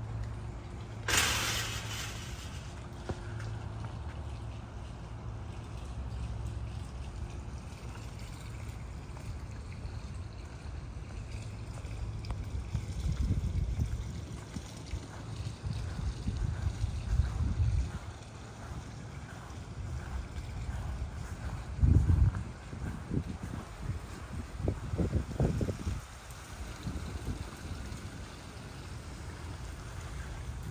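Outdoor ambience of wind buffeting the microphone in irregular low rumbles, the strongest about two-thirds of the way through. A steady low machine hum fades out after several seconds, and a brief hiss comes about a second in.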